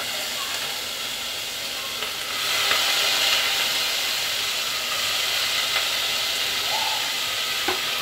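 Freshly added sliced onions sizzling in hot oil in a pressure cooker on a high gas flame. It is a steady frying hiss that grows louder about two seconds in.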